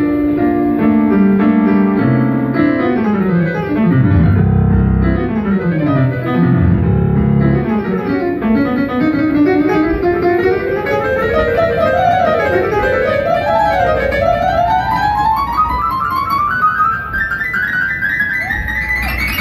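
Piano solo on a stage keyboard: chords at first, then fast runs sweeping down into the bass, then a long run climbing steadily up the keyboard toward the high notes near the end.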